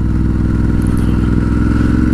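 Ducati Hypermotard 821's L-twin engine running steadily while riding, its pitch creeping up slightly as it pulls.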